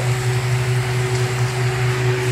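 Steady low mechanical hum from a motor or fan, with a fainter steady higher tone held above it.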